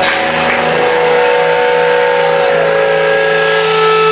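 Live blues band holding a long, steady sustained note over a held low bass note, with a few drum or cymbal strokes near the start.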